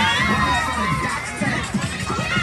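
Crowd of many voices shouting and cheering over one another, with music playing underneath.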